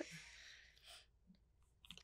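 Near silence: room tone, with a few faint clicks in the second half.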